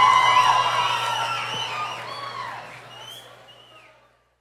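Concert crowd cheering, with many high whoops and screams, fading out steadily to silence.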